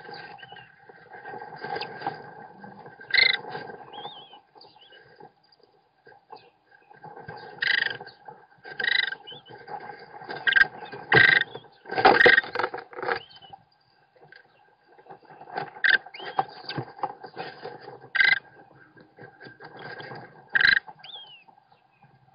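American kestrel nestlings calling in short, high, irregular bursts, some gliding in pitch, while the adult male feeds them and shifts about on the wood chips of the nest box, with a louder scraping thump about halfway through. A steady hum runs underneath.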